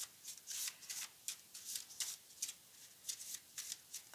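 A deck of tarot cards being shuffled by hand: a quick run of soft card flicks, about five a second.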